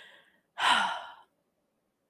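A woman's breath in, then an audible sigh, a breathy exhale with a slight falling pitch starting about half a second in and lasting under a second.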